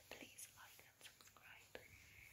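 Near silence: quiet room tone with a faint whisper and a few small clicks.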